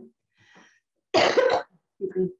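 A woman coughs once, a single loud cough about a second in, after a faint short sound.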